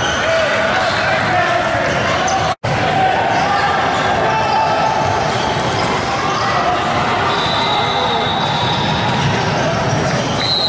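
Basketball game in a large echoing gym: basketballs bouncing on the hardwood court amid the voices of players and spectators. The sound drops out for an instant about two and a half seconds in, where the footage is cut.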